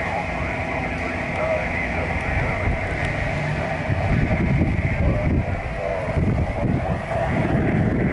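Steady outdoor background rumble, much like road traffic, with faint, indistinct voices now and then.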